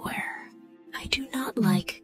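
Whispered speech reading rhyming lines from a children's story, with a pause about half a second in. Background music holds steady notes underneath.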